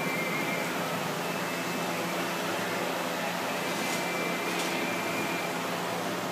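Steady background noise of a large indoor arena: an even hiss with a low hum, and two faint clicks a little past halfway.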